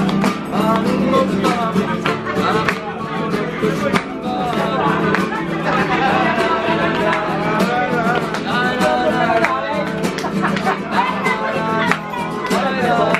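A man singing while strumming an acoustic guitar in a steady rhythm, his voice carrying the melody over the chords.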